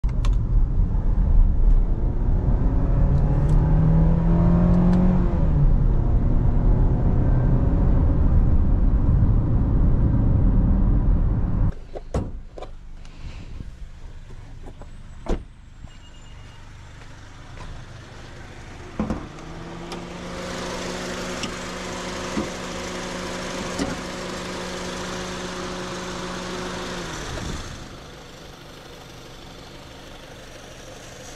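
Honda CR-V's K24 four-cylinder heard from inside the cabin while driving, over road noise, revving up with a rising pitch a few seconds in and then dropping back. After a sudden cut to much quieter sound with a few clicks, a steady hum with a hiss starts about two-thirds of the way through and stops shortly before the end.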